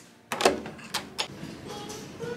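A sharp knock about half a second in, followed by two quieter sharp clicks close together around a second later.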